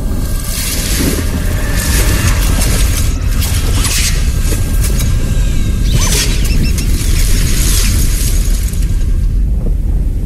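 Loud logo-sting sound effects: a deep, steady rumble with swooshing sweeps, the strongest about four and six seconds in.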